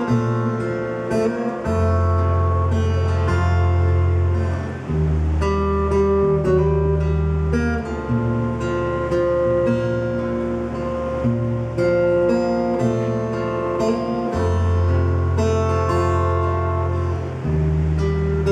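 Amplified acoustic guitar playing the instrumental introduction of a song, picked notes over low notes that change every couple of seconds.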